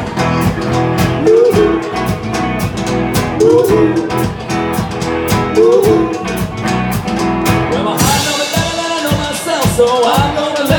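A live band playing: drums keep a steady beat under a short guitar figure with bent notes that repeats about every two seconds. Cymbals come in brightly about eight seconds in.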